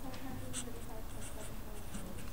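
Sharpie felt-tip marker writing numbers on paper in short scratchy strokes. Faint voices murmur in the background.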